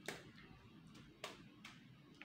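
An egg being tapped to crack its shell: three short, light taps, one just after the start and two more a little after a second in.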